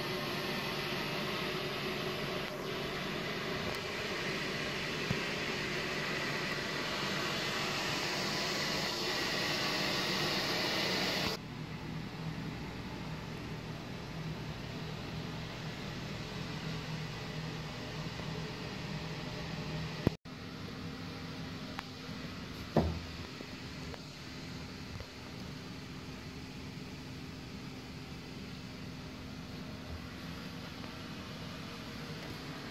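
Truck-mounted carpet-cleaning unit running steadily, heard as a constant hum with hiss; the hiss drops away abruptly about eleven seconds in, and a single short knock comes a little past two-thirds of the way through.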